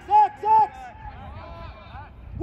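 A man's voice shouting twice in quick succession, followed by fainter voices in the background.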